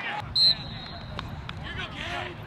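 A referee's whistle gives one short, shrill blast about half a second in, starting a lacrosse faceoff. Two sharp clicks follow over faint crowd voices.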